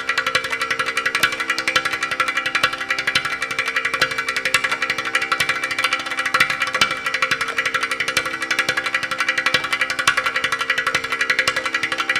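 Ghatam, a clay pot drum, played with a fast, continuous stream of finger and palm strokes over a steady tanpura drone.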